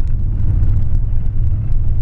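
Cabin noise of a 2000 Ford Ranger 4x4 driving on a gravel road: a steady low rumble from its 4.0-litre V6 and the tyres on gravel.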